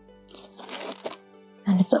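Paper card rustling as it is handled by hand, one short burst of about a second, over faint steady background music.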